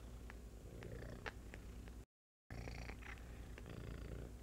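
Domestic cat purring steadily up close, with a few faint clicks. The sound drops out completely for about half a second midway.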